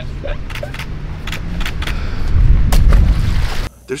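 Wind buffeting an outdoor microphone: a loud, uneven low rumble, strongest about two and a half to three seconds in, with faint voices under it. It cuts off abruptly just before the end.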